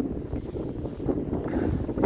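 Wind blowing across the microphone in a snowstorm, an uneven low rumble.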